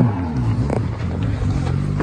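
Rally car's engine running under load on the stage, its pitch shifting up and down as it drives.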